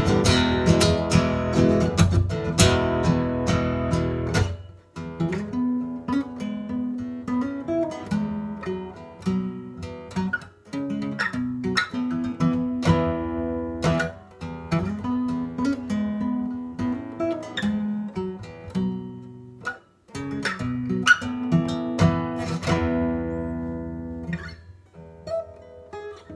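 Acoustic guitar strummed in dense chords for the first few seconds, then fingerpicked for the rest: separate plucked notes and chords, an instrumental passage.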